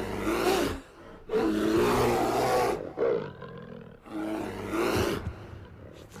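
A lion roaring three times, each roar lasting about a second with short pauses between.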